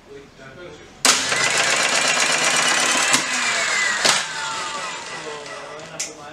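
Hyundai HAT12 air circuit breaker's motor starting suddenly and running loud for about three seconds, with a sharp click partway through and another as it cuts out. A falling whine follows as it spins down.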